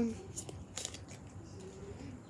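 Pokémon trading cards being handled, with a few short crisp flicks and slides of card against card about half a second and a second in.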